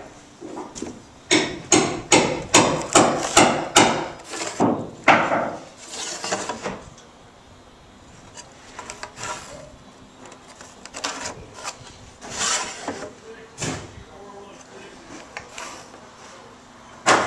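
Steel framing square with brass stair gauges being slid, set and knocked against an LVL stringer board while pencil lines are drawn along it: a quick run of short knocks and scrapes in the first few seconds, a longer scrape, then scattered single knocks.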